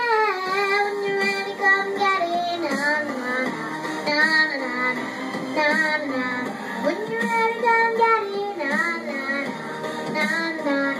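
A young girl singing karaoke over a pop backing track, holding long notes near the start and again toward the end, with shorter runs between.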